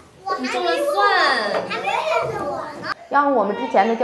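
Speech only: a young child saying in Mandarin "I planted garlic!" in a high voice. About three seconds in, a woman begins speaking in Mandarin.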